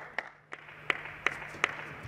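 Table tennis ball clicking off the bats and the table in a rally, a sharp click roughly every third of a second, starting about half a second in after a brief hush.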